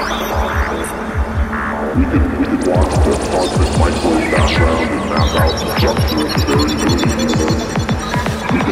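Psytrance music: fast, evenly spaced kick drum and bassline strokes drive the track, with electronic synth effects and leads above, the sound growing fuller about two seconds in.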